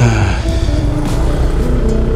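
Honda Forza 300 scooter under way on the road, its steady engine and road rumble heard under background music.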